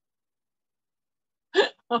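Complete silence, then near the end a woman's short amazed exclamation, 'Oh'.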